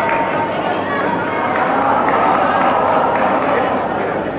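Spectators' voices and chatter filling an indoor athletics hall, steady and without clear words, as runners near the finish of a race.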